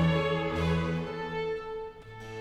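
A Baroque chamber orchestra plays: violins and other bowed strings over harpsichord continuo. The notes are held and die away near the end.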